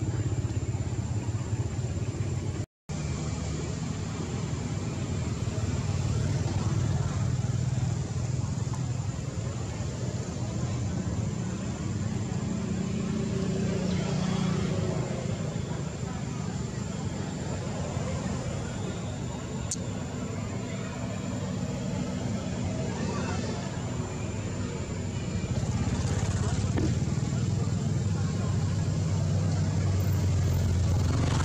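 Steady low rumble of motor traffic with faint human voices in the background. The sound cuts out for an instant about three seconds in.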